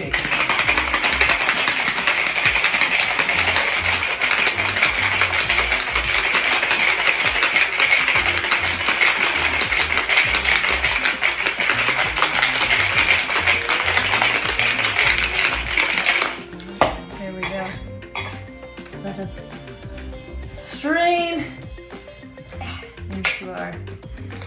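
Ice rattling hard in a metal cocktail shaker tin, shaken vigorously for about sixteen seconds to chill and froth an espresso-martini-style cocktail, then stopping suddenly. Light handling clinks follow.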